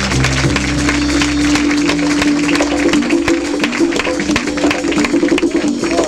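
Jazz quintet of electric bass, saxophones, drums and percussion playing up-tempo in an audience-made club recording. A lead line holds one long middle-register note, then breaks into a run of fast notes about halfway through, over busy drums and cymbals.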